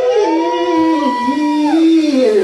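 Live rock band holding long wailing notes with no drums: a high note is held, then slides down near the end, over a lower line that steps in pitch.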